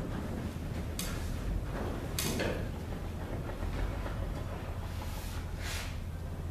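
Three brief rustling scrapes as a detached aluminium ultralight wing is handled by its nylon webbing straps, over a steady low hum.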